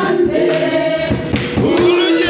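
Worship song sung by several voices through microphones and a sound system, held notes sliding between pitches.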